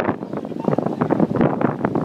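Wind buffeting the microphone in uneven gusts.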